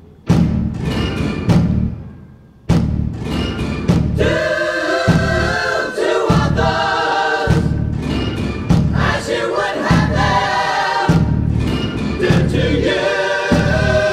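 A few heavy drum hits, each dying away, then from about four seconds in a choir singing together over a pounding low drum beat.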